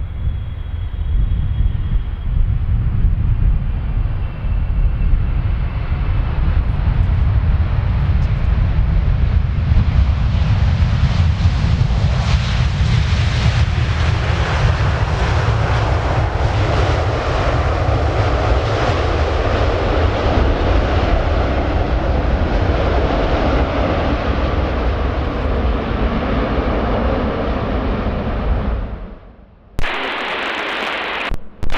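Boeing 777-300ER's twin GE90 turbofans on landing rollout: a steady low rumble, with louder, higher jet noise building from a few seconds in and strongest midway as the airliner rolls past. The sound cuts off suddenly near the end.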